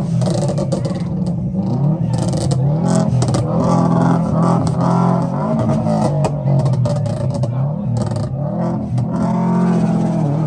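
Subaru Impreza's flat-four engine revving over and over, its pitch climbing and dropping each time, with crowd voices throughout.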